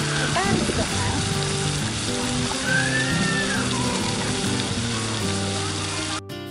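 Fountain jet spraying up and falling back into its stone basin: a steady hiss and splash of water, with background music playing underneath.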